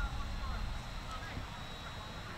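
Outdoor ambience: low wind rumble on the microphone, with a few faint, short high chirps.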